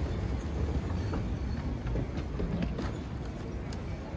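Ambience of a large airport terminal hall: a steady low rumble with scattered faint clicks and footsteps.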